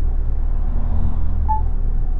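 Steady low rumble of a motorhome's engine and tyres on the road, heard from inside the cab while driving along.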